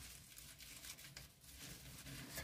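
Near silence, with a faint rustle of gloved hands handling the plant's stems and leaves.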